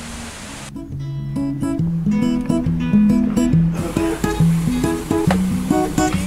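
Background music: an acoustic guitar plays a picked melody of separate notes. It comes in a little under a second in, after a brief steady hiss.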